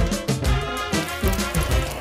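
Upbeat background music with a steady beat.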